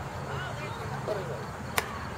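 A softball bat hitting a pitched softball: one sharp hit near the end, over faint voices of people around the field.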